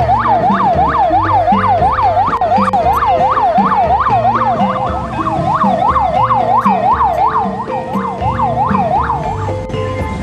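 Police escort siren in a fast yelp, its pitch rising and falling about three times a second, cutting off shortly before the end, with music underneath.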